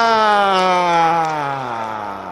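A male sports commentator's long drawn-out "goool" cry: one held vowel whose pitch slowly falls as it fades.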